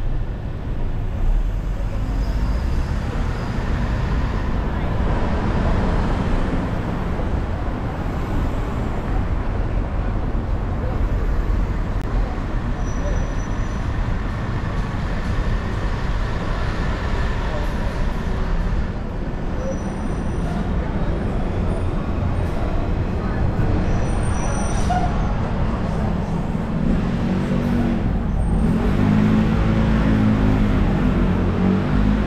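Steady city traffic and road noise from a car driving on downtown streets: a low rumble of engine and tyres with other vehicles passing.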